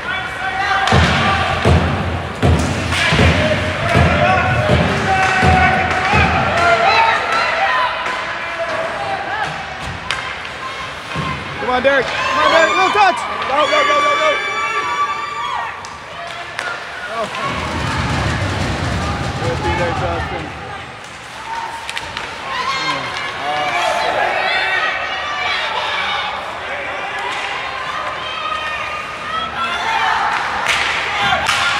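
Ice hockey rink heard from the stands: spectators' voices and shouts over the game, with thuds of pucks and players hitting the boards in the first several seconds and a held high-pitched tone near the middle.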